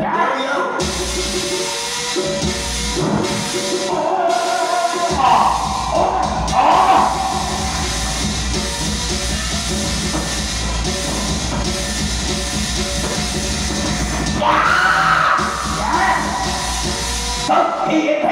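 Live accompaniment music for a traditional costumed opera stage performance: a continuous dense band over a steady low percussion bed, with high gliding melodic phrases that swell about five to seven seconds in and again near fifteen seconds.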